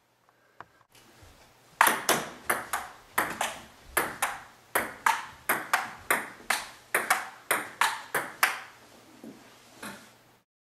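Table tennis ball struck again and again in a fast run of sharp, ringing pocks, about three a second at slightly uneven spacing, starting about two seconds in.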